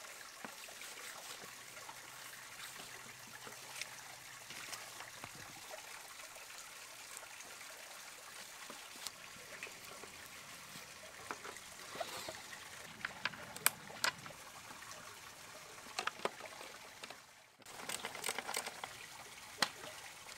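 Small clicks and taps of skateboard mounting bolts being handled and pushed through a deck, scattered through the second half, over a faint steady hiss.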